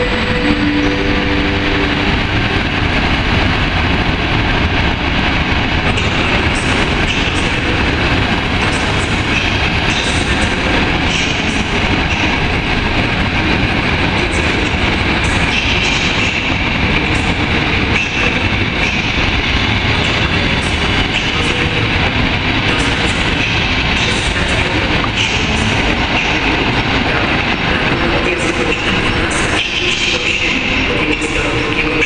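Passenger coaches of a locomotive-hauled train rolling past close by, a steady loud rumble of wheels on rails with repeated clicks over the rail joints.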